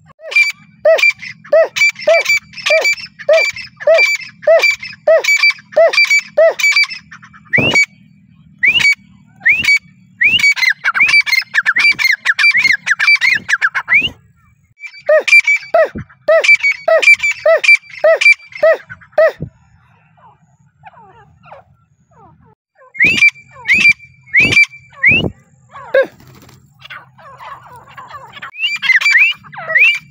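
Grey francolin (teetar) calling: a steady series of sharp rising notes about one and a half a second, broken by a run of rapid chattering notes, a short lull past the middle, then more calls toward the end. A few sharp clicks stand out among the calls.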